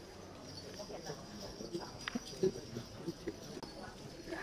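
Quiet hall noise between numbers: faint murmuring voices with scattered small knocks and shuffling steps, over a faint steady high-pitched hiss.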